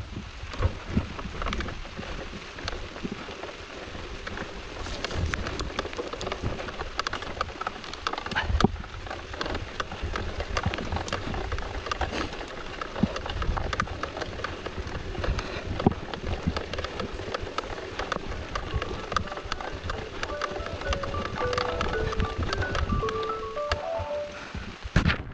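Mountain bike ridden along a wet dirt trail: tyre noise with the chain and frame rattling and knocking over bumps, and a steady low rumble of wind on the camera. In the last few seconds a short run of high tones steps downward.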